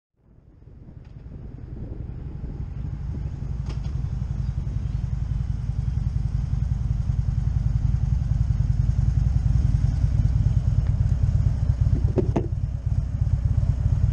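Harley-Davidson V-twin engine running at low road speed, a steady deep exhaust rumble that fades in over the first couple of seconds.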